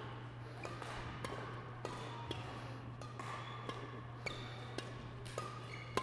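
Badminton hall sound: scattered, irregular sharp taps of rackets striking shuttlecocks, with a few brief squeaks, over a steady low hum.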